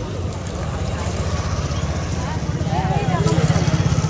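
Voices of a milling crowd over a low, throbbing rumble that swells louder about three seconds in.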